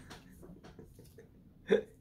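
A single short vocal burst from a person, like a hiccup, about one and a half seconds in.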